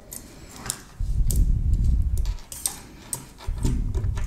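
Small metallic clicks and handling rustle as SMA coax connectors are fitted by hand to a small RF circuit board, with a stretch of low rumble in the middle.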